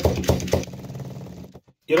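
A hand vacuum pump worked on a plastic jar lid to draw the air out of the jar: a quick run of clicks in the first half second, then a quieter rasp that stops about a second and a half in.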